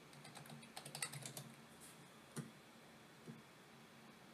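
Faint computer keyboard typing: a quick run of keystrokes about a second in, then two single clicks later on.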